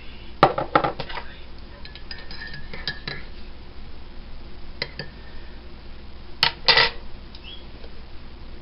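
Metal teaspoon stirring tea in a ceramic mug, clinking against the sides in scattered sharp clicks, with the loudest few clinks about six and a half seconds in.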